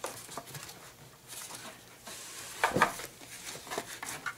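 Soft clicks and rustles of plastic cutting plates and card stock being handled and laid onto a die-cutting machine's platform, with one louder handling sound about three seconds in.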